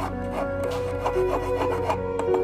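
Flat hand file scraping back and forth on a small piece of silver wire, in quick repeated strokes about four a second, over background music.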